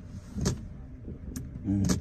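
Steady low rumble inside a car cabin, with a couple of faint clicks and a short voiced murmur near the end.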